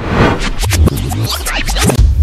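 Short electronic music sting with rapid DJ-style record scratching over a deep bass, the kind of sound effect used as a segment transition.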